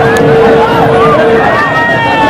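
Large street crowd shouting and cheering with many overlapping voices. A single steady tone is held through the first second and a half, then stops.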